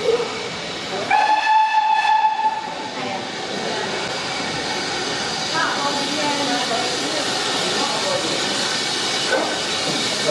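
A steam locomotive whistle blows once, a bit over a second in, one steady note lasting under two seconds. A steady hiss of steam follows and runs on, slightly louder near the end.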